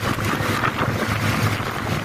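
Steady rush of wind buffeting the microphone over the rumble of a vehicle travelling at speed, with uneven low pulses from the wind gusts.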